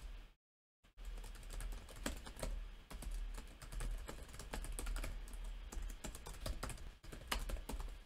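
Typing on a computer keyboard: a quick, uneven run of key clicks that starts about a second in and keeps going, as a short sentence is typed.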